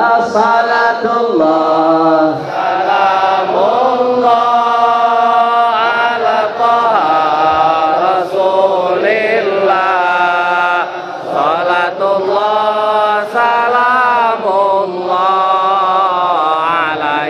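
A congregation of men chanting a salawat to the Prophet together in a slow melody, holding long notes and gliding between them.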